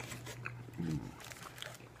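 Close-miked eating sounds: small mouth and food clicks, with one short low grunt-like hum from the eater about a second in.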